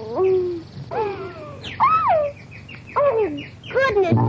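Cartoon canary chirping: a series of pitched calls, each sliding down in pitch, coming about once a second.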